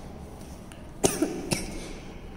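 A woman coughing briefly: two sharp coughs about half a second apart.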